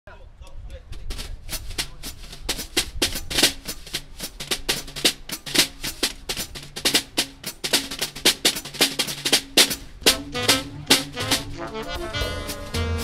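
Jazz drum kit played with sticks as a solo intro: rapid, rhythmic snare strokes and cymbal hits, several a second, with a few pitched notes joining near the end.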